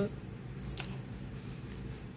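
A few light clicks and clinks as small polished stones are set down on top of a deck of tarot cards, over a faint steady low hum.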